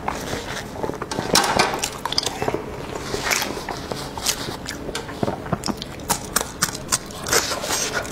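Close-miked mouth sounds of a person chewing soft pork brain: a run of wet clicks and lip smacks, mixed with the crinkle of a paper tissue being wiped and handled.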